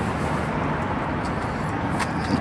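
Steady outdoor background noise: an even low rumble and hiss with no single clear event.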